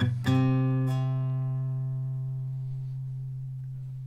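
Acoustic guitar struck once about a third of a second in, left to ring and slowly fade.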